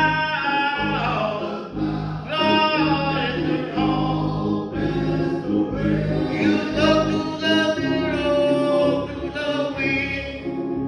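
A group of men singing a gospel song together, several voices in held notes.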